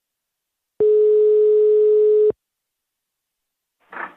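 Telephone busy tone over the phone line: one steady, single-pitched beep lasting about a second and a half, the signal that the other party has hung up and the call has ended.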